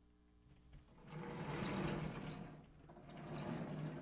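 Sliding chalkboard panels rolling along their tracks as they are moved up and down, in two long pushes, the first about a second in and the second near the end.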